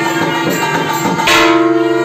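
Temple music with a steady drone and bell tones, and a bell struck about a second and a half in.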